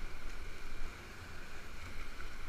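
Steady rush of whitewater rapids churning around a kayak, a continuous hiss with a low rumble that eases slightly about a second in.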